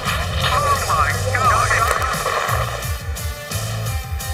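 Promo soundtrack music with a pulsing bass beat, with wavering higher sounds riding over it.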